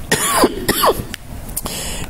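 A man coughing twice in quick succession near the start, each cough short.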